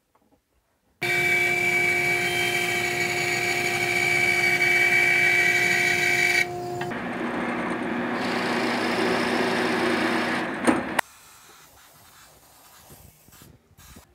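Drill press running with a steady whine, then turning rougher and lower as the bit bores into a small block of wood. The sound cuts off suddenly about three-quarters of the way through, leaving only faint handling sounds.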